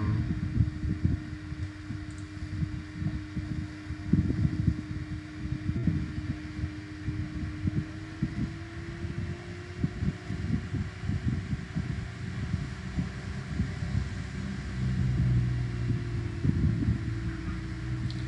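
Steady low mechanical hum with a faint tone that rises slightly about halfway through, over an uneven low rumble.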